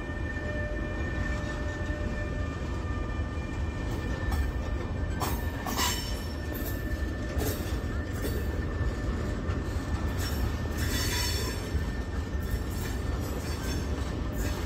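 Goods wagons of a freight train rolling past: a steady low rumble of wheels on rail under a thin, steady high squeal, with brief screeches from the wheels a few times, the longest about eleven seconds in.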